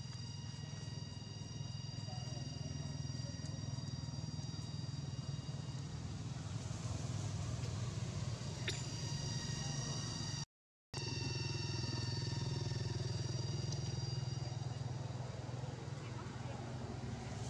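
Steady low background rumble with a thin, steady high-pitched whine over it, and no distinct animal calls. The sound cuts out completely for about half a second a little after ten seconds in.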